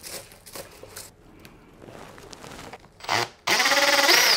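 Faint scratching and rustling as the pine's roots are combed out. About three seconds in, a cordless drill starts with a short burst, then runs steadily as it drives a screw into a wooden prop. The drill is the loudest sound.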